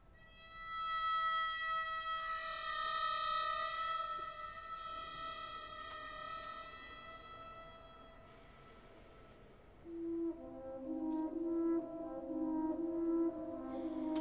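A harmonica holds one long, high note that swells twice and fades away about eight seconds in. After a short pause the orchestra comes in with low, pulsing chords.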